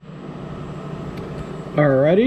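Steady whir and low hum of an enclosed high-temperature 3D printer's fans running, with a man starting to speak near the end.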